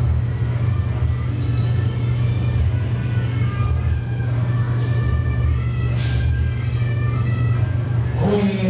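A loud, steady low rumble throughout, with faint pitched tones of music above it.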